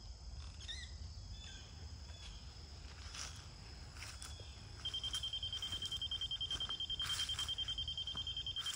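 Laser receiver on a grade rod beeping rapidly, a steady high-pitched beep pulsing about nine times a second that starts about five seconds in; the receiver's fast beeping tells the rod holder he is closing in on the rotating laser's beam. Before it, only faint outdoor background with a few chirps.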